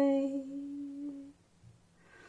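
A woman's voice holding a steady hummed tone as part of a light language transmission. It wavers and trails off about half a second in and dies away just over a second in.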